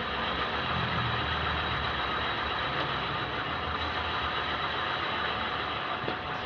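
The rear BLDC hub motor of an electric bicycle, powered by a single 12 V battery, running steadily and spinning the rear wheel with no load on it.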